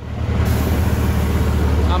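A heavy engine running steadily, with a loud hiss coming in about half a second in.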